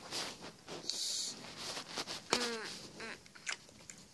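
Small plastic toys handled up close: clicks, knocks and rustling, with one short squeaky sound, slightly falling in pitch, a little over two seconds in.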